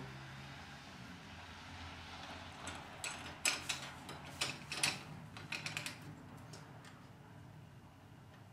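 A cluster of light metal clicks and knocks between about three and six seconds in, as a thin metal tie bar is fitted down over the bolts of a chainsaw mill's aluminium end bracket. A faint steady hum runs underneath.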